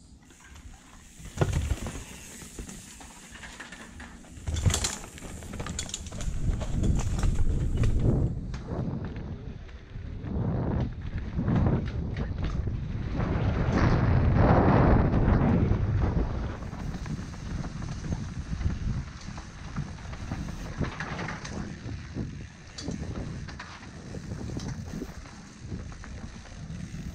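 Mountain bike descending a rough dirt trail: rumble and rattle of the bike and tyres over the ground, with wind on the microphone. There are sharp knocks from bumps about a second and a half in and near five seconds, and the rumble is loudest around the middle.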